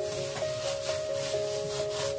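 A plastic-gloved hand kneading minced pork in a stainless steel bowl: repeated rubbing strokes of glove and meat, about two a second. Background music with a simple held melody plays throughout.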